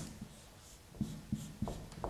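A pen writing the strokes of a Chinese character, heard as several short faint strokes in the second half.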